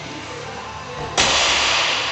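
A sudden loud burst of noise about a second in, fading over the next second, as a loaded barbell with bumper plates is jerked from the shoulders to overhead. Steady background music plays underneath.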